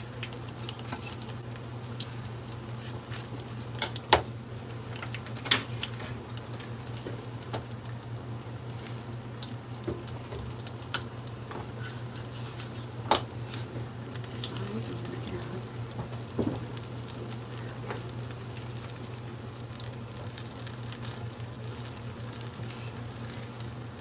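Spoonfuls of apple-cinnamon dough deep-frying in a pan of hot oil: a steady sizzle, with a few sharp clicks of a metal spatula and tongs against the pan. A low steady hum runs underneath.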